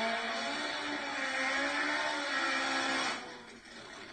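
Muffled, distant running of a nitro-burning Top Fuel drag motorcycle engine on old videotape audio, fairly steady with a slight waver in pitch, dropping away about three seconds in.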